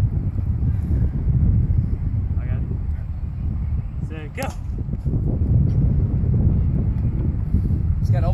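Wind buffeting a phone microphone outdoors, a fluctuating low rumble throughout, with a man's voice calling out briefly twice, about two and a half and four and a half seconds in.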